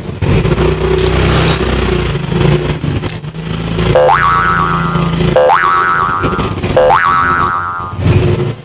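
Edited-in sound effects: a motorcycle engine running for the first few seconds, then three cartoon 'boing' effects about a second and a half apart, each one rising in pitch and then ringing on.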